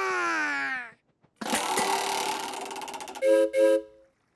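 Cartoon sound effects: a long cry sliding down in pitch, then a hiss lasting nearly two seconds, then two short toots of a boat horn near the end.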